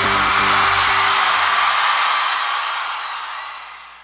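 Closing music of a trailer with concert crowd cheering over it; the music's low notes die away in the first two seconds and the cheering fades out steadily over the rest.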